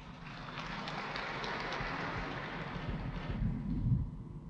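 Audience applauding, swelling over the first second and dying away near the end.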